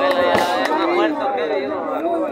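A street band's drum kit gives two last sharp hits in the first second as the music stops. After that only the crowd's many overlapping voices remain, talking and calling out.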